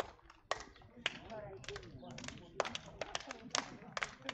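A quick, irregular run of sharp hand slaps as handball players high-five each other down a line, coming faster in the second half, with men's voices talking between them.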